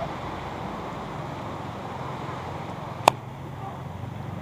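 Steady wash of small surf breaking on a sandy beach, with one sharp click about three seconds in.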